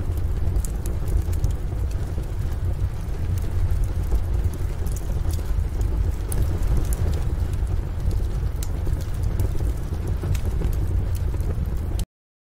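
Rain ambience: steady heavy rain with a deep low rumble and scattered sharp drip ticks, cutting off suddenly at the end.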